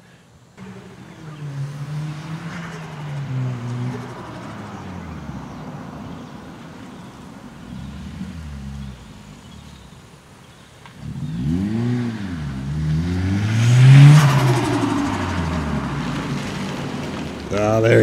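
Turbocharged Honda CR-Z's engine as the car drives up, its pitch wavering at first, then revved up and down several times from about eleven seconds in, loudest around fourteen seconds.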